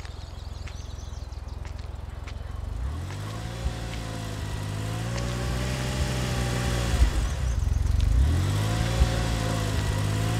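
Car engine approaching and growing louder, its pitch rising twice as it accelerates: once about three seconds in and again about eight seconds in.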